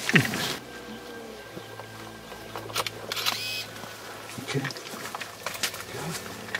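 Camera shutters clicking a few separate times. A short loud sound that falls steeply in pitch comes at the very start.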